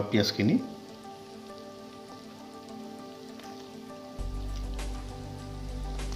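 Goat meat frying in hot oil in a pan, a steady sizzle, under background music; a deeper low hum joins about four seconds in.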